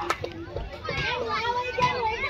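Several people shouting and calling out over one another, some voices high-pitched, while play goes on.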